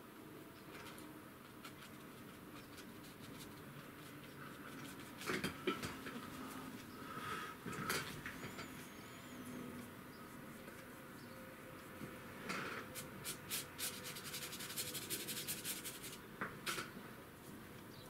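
Bristle brush scrubbing and dabbing acrylic paint onto cartridge paper and working paint on a paper palette. It comes as faint, scratchy rubbing in a few short bursts, with a quicker run of strokes in the last third.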